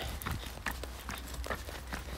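Footsteps of a person walking at an even pace, about two steps a second, picked up by a phone microphone.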